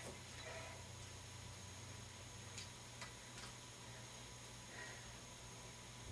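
Near silence: room tone with a faint steady hum and a few faint ticks a little past halfway.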